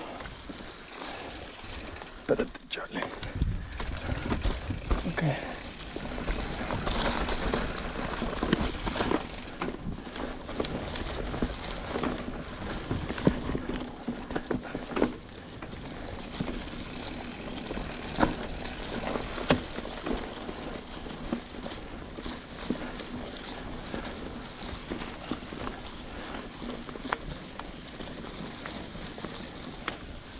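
Giant Trance 29 mountain bike riding over a leaf-covered dirt trail: tyres crunching through dry leaves, with frequent clicks and knocks from the bike over roots and rocks. A few seconds in, wind rumbles on the microphone.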